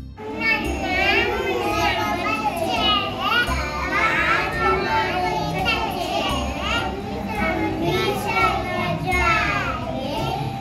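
A group of young children singing a song together over recorded backing music with a steady beat.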